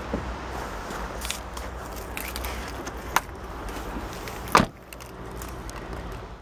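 A 2009 Chevrolet Impala's door being shut with a heavy thud about four and a half seconds in, after a few lighter clicks and a sharp click just after three seconds.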